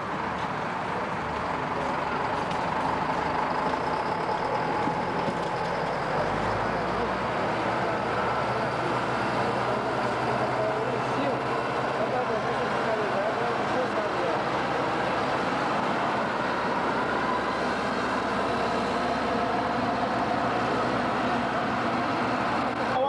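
Diesel engines of road-paving machinery, a motor grader and a dump truck, running steadily at close range, with people talking in the background.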